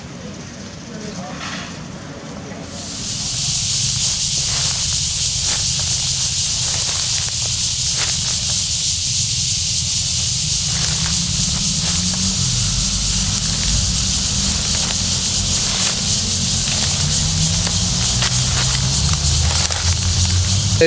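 A loud, steady high-pitched hiss sets in about three seconds in and holds, over a low, unsteady rumble.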